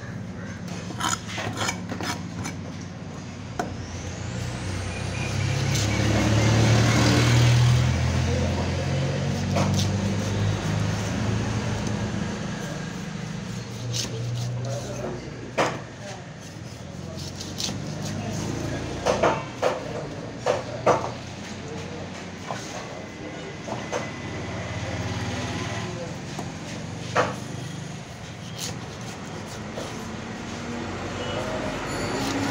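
Large knife chopping king fish into steaks on a wooden cutting block: scattered sharp knocks, with several in quick succession about two-thirds of the way through. A low engine rumble swells and fades in the first half.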